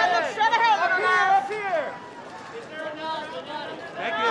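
Overlapping shouted voices of press photographers calling out to a subject, loud for about the first two seconds, then fainter voices and chatter.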